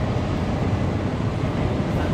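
Steady low rumble of city vehicle traffic.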